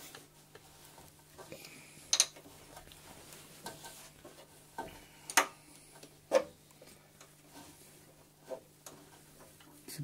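Small metal clicks and scrapes of a wire clip and fastener being handled by hand on the car's sheet-metal body, a few sharp ticks loudest about two, five and six seconds in, over a faint steady hum.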